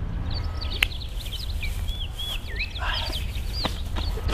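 Outdoor birdsong: many short chirps that rise and fall, over a steady low rumble. There is one sharp click about a second in.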